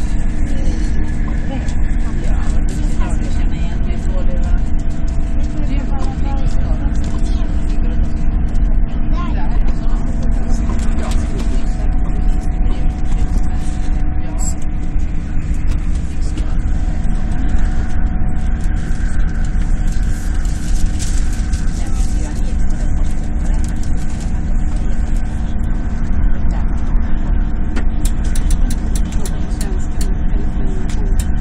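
Interior noise of an SJ X2000 high-speed electric train running at speed, heard from inside the passenger car: a steady low rumble with a few steady humming tones held over it.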